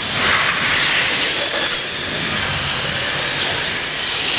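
1/32-scale slot cars racing on a multi-lane routed track: small electric motors whining with a hiss from the cars running in the slots, swelling briefly each time a car passes.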